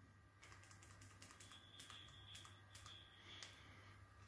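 Near silence with faint, irregular light clicks as baking soda is tipped from a bag onto a metal spoon, the clicks falling off shortly before the end.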